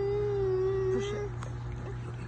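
A baby's long drawn-out vocal sound, one held note sliding slowly down in pitch and fading out a little over a second in.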